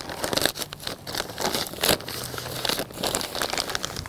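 Plastic bag of potting soil crinkling and rustling with many small crackles as it is shaken out and handled over a pot, with the soil spilling in.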